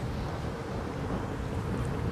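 Steady wind noise on the microphone over the low rumble of an electric unicycle (KingSong 18XL) rolling along a concrete sidewalk at riding speed.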